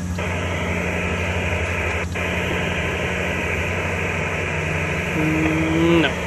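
HF amateur radio transceiver's speaker giving a steady hiss of band static, with a low hum under it. The hiss drops out briefly twice, just after the start and about two seconds in, and a low steady tone comes in near the end.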